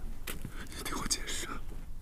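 Faint whispering and breathy vocal sounds in short bursts, about a quarter second in and again around a second in.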